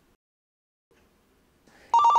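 Near silence for most of the time, then right at the end the FD safety pendant starts to ring again for an incoming call: a rapid warble between two high tones.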